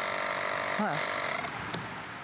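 Handheld cordless piston air compressor running steadily while inflating a car tyre through a hose on the valve stem, with a motor hum that has several steady tones. The running stops about a second and a half in.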